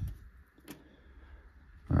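Quiet room tone with one soft, short click about two-thirds of a second in, from a stack of baseball trading cards being handled.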